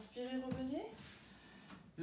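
A woman's voice speaking a short phrase in the first second, ending on a rising pitch, then a quiet room.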